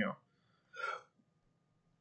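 A man's speech trails off, then a single short intake of breath about a second in; otherwise near silence.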